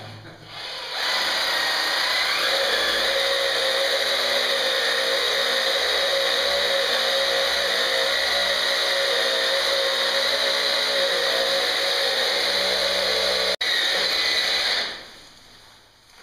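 Power drill boring into cave rock, running steadily at an even pitch. It starts about a second in, breaks off for an instant near the end, runs on briefly, then stops.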